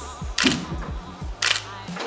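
Two short, sharp clicks about a second apart over background music with a steady beat.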